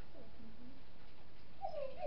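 A dog whining: a few short, high whimpers that slide down in pitch, the clearest one near the end.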